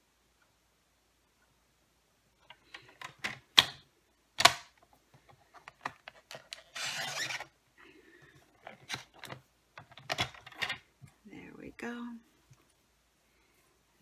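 Paper trimmer in use on a strip of cardstock: clicks and taps as the paper and trimmer are handled, then a short rasping slide about seven seconds in as the cutting blade is drawn along the track, followed by more clicks.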